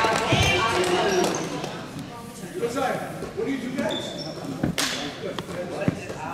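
A basketball bouncing on a gym's hardwood floor a few times, once near the start and twice near the end, under people talking in the gym.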